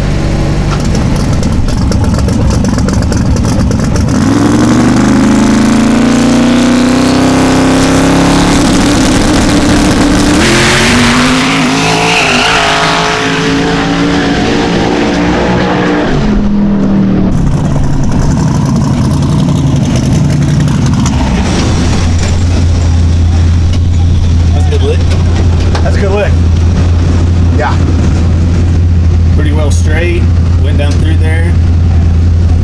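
Twin-turbo Chevy Nova drag car making a pass down the road. The engine pitch climbs steadily for several seconds, there is a loud rush of noise about ten seconds in, and then the engine note drops away. A steady low hum follows.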